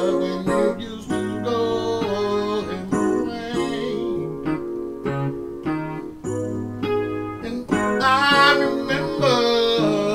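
Electronic keyboard played in sustained piano-style chords, with a man singing over it, his voice strongest about eight seconds in.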